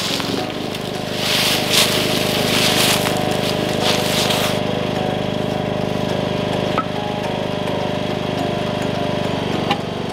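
Lawn tractor engine running steadily. In the first few seconds, rustling leaves and the scrape and knock of concrete blocks being handled.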